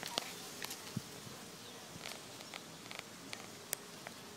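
Quiet outdoor street ambience: a steady faint hiss with a low hum under it, broken by scattered light clicks and a couple of faint chirps.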